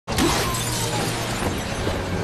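A glass tank shattering: a sudden crash, then a sustained spray of breaking glass.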